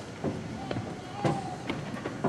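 A series of sharp, uneven knocks, roughly two a second, over faint voices.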